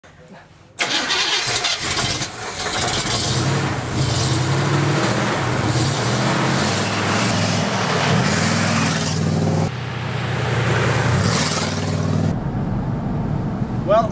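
Engine of a 1979 Buick LeSabre circle-track race car, running and revving loudly with its pitch rising and falling. The sound starts abruptly about a second in and changes suddenly near ten seconds and again after twelve seconds, where different stretches are joined.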